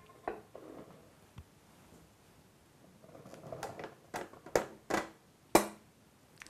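Icing sugar pouring from a glass bowl into a stand mixer's steel bowl, with a soft rush of powder and then several sharp clinks and knocks of glass against the steel bowl in the second half.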